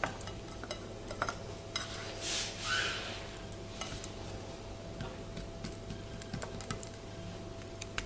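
Small clicks and taps of hands handling raw sausages on a ceramic plate, with a brief rustle about two and a half seconds in, over a faint steady hum.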